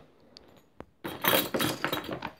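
Metal studs and buckle of studded leather belts jingling and clinking as they are handled, starting about a second in after a quiet moment with a couple of faint clicks.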